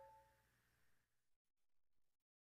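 Near silence: the last ringing tones of the soundtrack music fade out within the first half second, leaving almost nothing.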